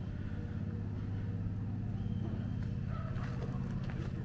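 A vehicle engine running steadily with a low, even hum.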